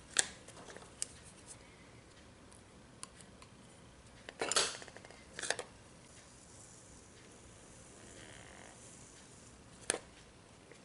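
Plastic scraper tool rubbing over transfer tape on a ceramic mug, with a longer rasping rub about four and a half seconds in and a shorter one just after, among a few sharp clicks and knocks from handling the mug and tool.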